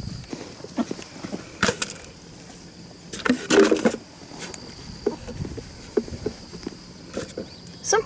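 Footsteps and the knocks and rustles of a plastic bucket being handled, with a louder knock about three and a half seconds in. A faint steady high whine runs underneath.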